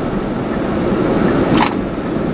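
Steady road and engine noise heard inside a moving car's cabin, with a brief hiss about a second and a half in.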